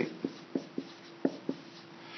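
Dry-erase marker writing on a whiteboard: about six short, sharp strokes and taps of the felt tip against the board in quick succession, then a pause.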